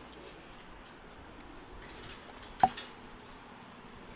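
A single sharp click or tap about two and a half seconds in, with a smaller tick just after it, over faint steady street background.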